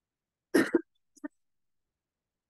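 A person coughing once, a short sharp burst, followed a moment later by a much quieter short sound.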